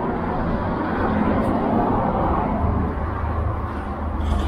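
Steady background noise with a low rumble that grows stronger near the end.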